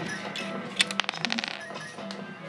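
Background music, with a quick run of small plastic clicks about a second in as LEGO pieces and a minifigure are handled.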